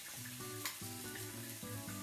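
Chopped onion sizzling in hot oil in a pan, with soft background music of held notes playing over it.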